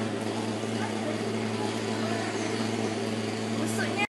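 Steady drone of a mosquito fogging machine spraying against dengue mosquitoes, an even engine hum.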